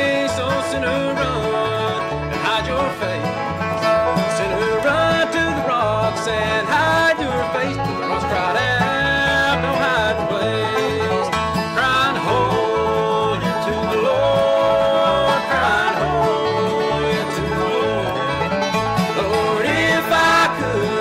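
A bluegrass band playing: banjo, acoustic guitar and plucked upright bass keep a steady beat while the guitarist sings the lead vocal.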